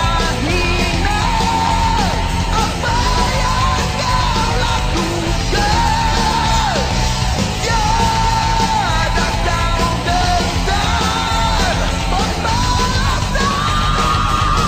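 Malay rock song with a strong, strained lead vocal singing a gliding melody over a full electric band.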